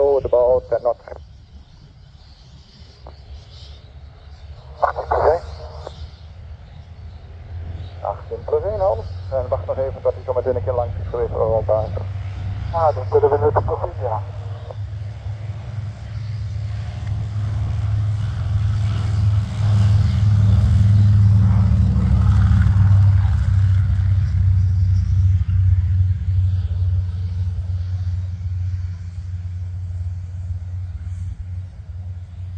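SAAB B17A's Pratt & Whitney Twin Wasp radial engine at take-off power: a deep rumble that builds over several seconds, is loudest past the middle, then slowly eases off as the plane runs down the runway.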